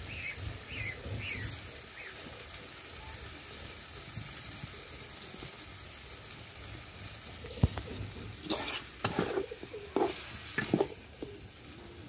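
Meat in spices sizzling steadily as it fries in a karahi, stirred with a metal ladle. From about halfway through, the ladle scrapes and knocks against the pan several times, louder than the sizzle.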